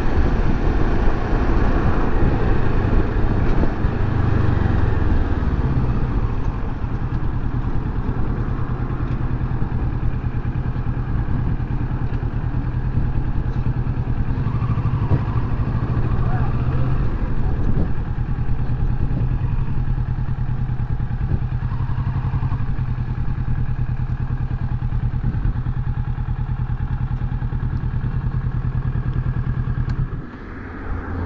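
Kawasaki Versys 650 motorcycle's parallel-twin engine running steadily as the bike is ridden at low speed.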